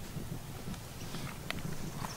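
Footsteps on a wood-chip mulch path: uneven soft thuds with a few sharp clicks, the sharpest about one and a half seconds in.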